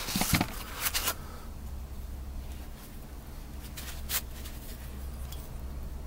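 A shop rag rubs over a metal brake master cylinder with light handling clicks for about the first second. Then a faint steady low hum runs, with a single sharp click about four seconds in.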